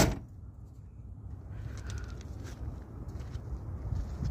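Low, steady rumble of a semi truck's diesel engine idling, with a sharp knock at the very start and a few faint clicks.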